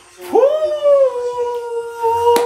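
A man's voice letting out one long, high howl that swoops up at the start and then holds steady.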